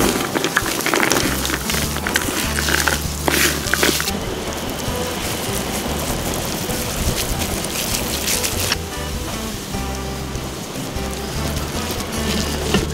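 Background music over the crackling, squishing noise of gloved hands mixing and squeezing a wet chopped-vegetable filling, which drops off about nine seconds in.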